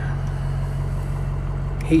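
Ford Power Stroke turbo diesel V8 idling steadily, a low even hum heard from inside the cab.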